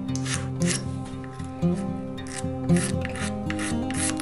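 Hand file rasping across the end grain of a small redwood pin, chamfering its top, in about eight short, uneven strokes. Acoustic guitar music plays underneath.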